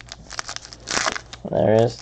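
Foil trading-card pack wrapper crinkling as it is torn open, with the sharpest tear about a second in. A voice starts speaking near the end.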